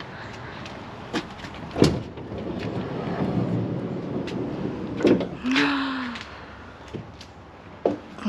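Ford Transit van's sliding side door being unlatched and opened: a sharp latch click about two seconds in, a rumble of a few seconds as it rolls back along its track, and a knock as it stops.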